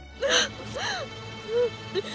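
A woman sobbing in about four short gasping cries, each rising and falling in pitch, over steady background music.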